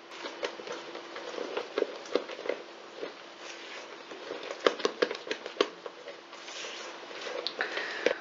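A utensil scraping and clicking against a plastic jug and a stainless steel mixing bowl as beaten egg whites are spooned out and folded into a quark batter: an irregular run of soft scrapes and sharp clicks, with a cluster of louder clicks past the middle.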